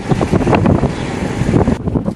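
Wind buffeting the microphone: a loud, irregular rumbling gust noise.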